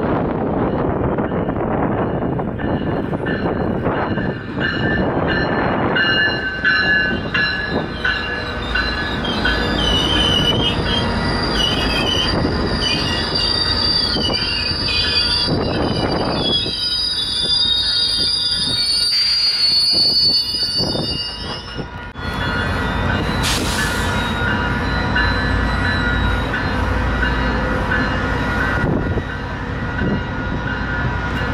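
Diesel-hauled GO Transit bilevel passenger train passing close by, a steady rumble of the locomotive and rolling cars with the steel wheels squealing on the rails in high, wavering tones. The sound breaks off and changes abruptly a little past the two-thirds mark, then the rumble and squeal carry on.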